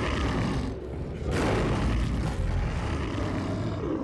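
Cartoon sound effect of fire flaring in a cloud of smoke: a dense, low rumbling noise that surges sharply about a second and a quarter in.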